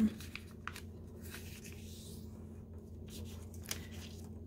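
A sheet of origami paper rustling and crinkling softly as hands fold and crease it, with a few faint clicks.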